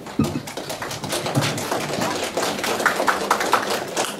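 Audience applauding, many people clapping by hand.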